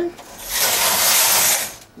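Knitting machine carriage pushed across the needle bed to knit one row: a steady swish of about a second and a half as the carriage runs over the needles.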